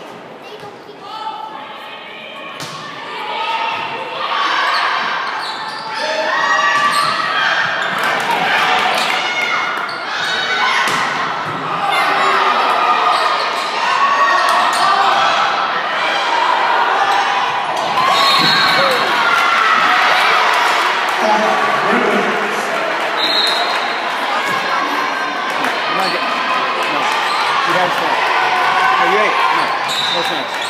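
A volleyball rally in an echoing gymnasium: sharp ball hits on hands and the court, with players and spectators shouting and cheering. The crowd noise builds over the first several seconds and stays loud.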